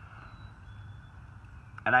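Steady, faint outdoor background rush, even and unbroken, in a pause between words. A man's voice starts again near the end.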